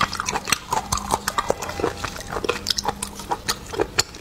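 Wet eating sounds of spicy snails: quick sucking, slurping and lip smacks as the meat is pulled from the shells, in a dense, irregular run of short clicks and smacks.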